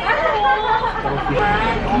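Indistinct chatter of people talking in the background.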